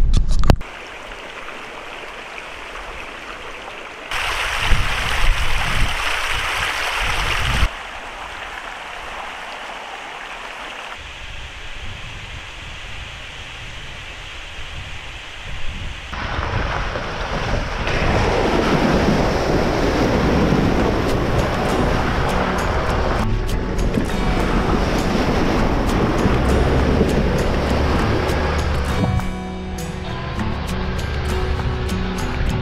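Rushing water of a small creek spilling over rocks in a shallow riffle, as a steady noise whose loudness jumps at each cut. Near the end there are many small clicks, where a Jeep rolls along a dirt track.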